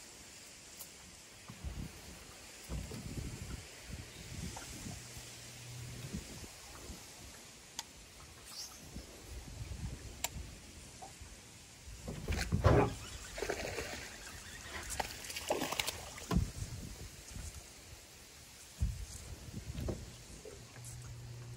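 Water splashing as a small largemouth bass is reeled to the boat and swung aboard, the loudest splash about halfway through, with scattered knocks and rustles of handling near the end.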